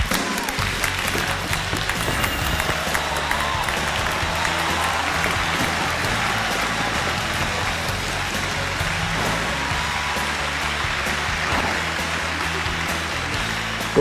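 Studio audience applauding over an entrance music cue.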